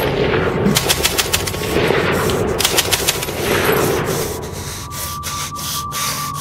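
Sound-effect machine-gun fire in rapid runs, about nine shots a second, with rushing surges of heavier noise between the bursts. A steady high tone comes in near the end.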